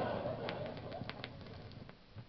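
Audience laughter fading out over about two seconds, with a few sharp clicks in the first second, heard on an old shellac 78 rpm record.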